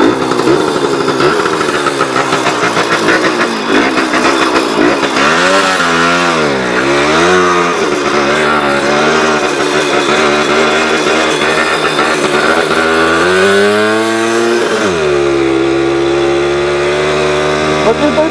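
Small two-stroke moped engine catching and running as the moped rides off, its pitch dipping and climbing back twice with the throttle before settling to a steady note.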